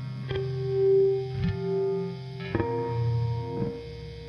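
Peerless Retromatic electric guitar, tuned down to C standard, played through an Argenziano Gypsy Vibe and a J Rockett Blue Note overdrive into a 1964 Fender Vibroverb amp, with a lightly distorted, wavering tone. Slow blues single notes are picked about once a second and left to ring, the first held note swelling about a second in.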